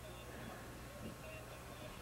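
Faint background between announcements: a steady low electrical hum under faint, distant voices.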